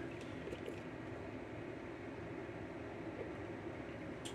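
Steady low background hiss and hum of room tone, with a few faint light clicks in the first second.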